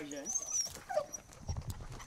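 Cocker spaniels making brief excited dog sounds as they are about to be let out to work.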